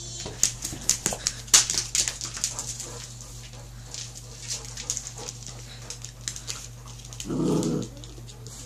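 A large husky-type dog playing with a worn soccer ball on a laminate floor, its claws and the ball making a dense run of sharp clicks and knocks in the first three seconds, then scattered ones. Near the end comes a short, low dog vocal sound about half a second long.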